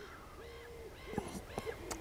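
A faint single hooting call held on one steady note for a little over half a second, followed by a few faint ticks, in quiet outdoor background.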